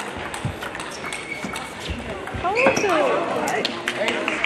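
Table tennis rally: a celluloid ball struck back and forth, a sharp click on bat or table roughly every half second. About two and a half seconds in, a loud shout with a rising and falling pitch ends the rally.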